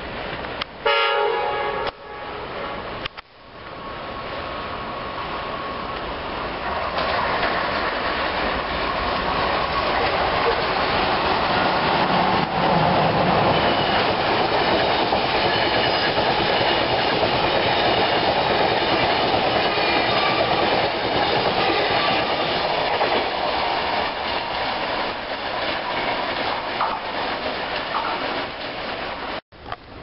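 A train horn sounds one short blast about a second in. Then a passenger train passes close by at speed: a loud, steady rumble and clatter of wheels on rail that builds for a few seconds and holds for over twenty seconds.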